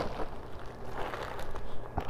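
Plastic poly mailer bag rustling and crinkling as it is handled open, with many small crackles.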